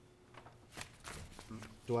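Paper rustling with a few soft clicks during a pause, then a man's voice begins at the very end.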